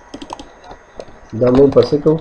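Faint computer keyboard clicks while code is being edited, followed about two-thirds of the way through by a voice speaking.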